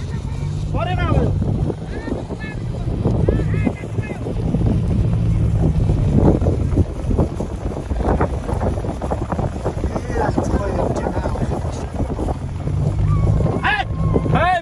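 Vehicle cabin noise while driving over rough grassland with the window open: a steady low engine drone, wind on the microphone, and frequent knocks and rattles from the bumpy ride. Voices call out a few times in the first four seconds.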